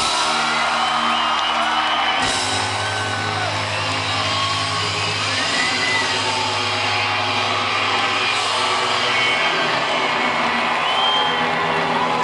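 Live rock band with guitars, piano and drums holding sustained chords, with the crowd cheering and whooping over it.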